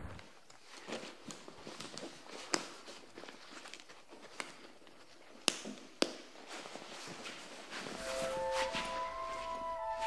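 Scattered light clicks and knocks of books and a backpack being handled at a school desk. About eight seconds in, soft music with held notes begins.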